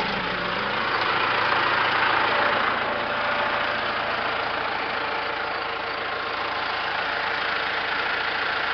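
Tractor engine running steadily.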